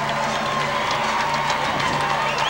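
Arena crowd cheering and applauding, with music playing underneath.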